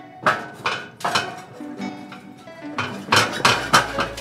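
Steel trailer ramps and deck clanking in a few sharp, ringing metallic strikes as a golf cart rolls up onto a utility trailer. There are three strikes in the first second or so and a quicker cluster near the end.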